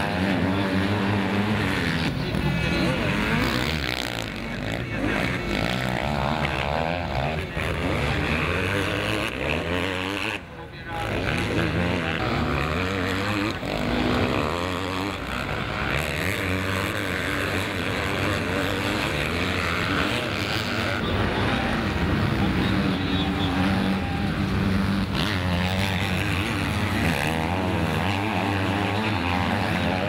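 Four-stroke 250 cc motocross bike engines racing, their revs rising and falling over and over as the riders accelerate, shift and back off through the turns. The sound drops away briefly about ten seconds in.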